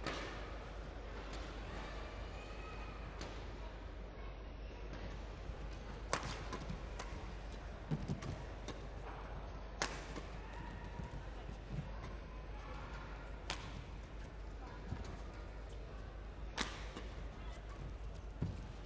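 Badminton rackets striking a shuttlecock in a doubles rally: sharp cracks every few seconds, with a few dull thuds of footwork on the court, over a steady low hum.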